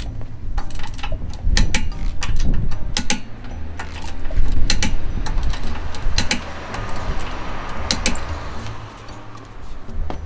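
Irregular metallic clicks and clinks of a steel wrench being worked at a van's wheel, over background music with a steady bass line.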